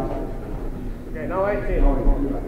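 People talking, their words not clear, with the voices strongest from about a second in.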